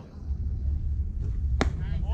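A baseball smacking once into a catcher's mitt, a single sharp pop near the end, over a steady low rumble of wind on the microphone.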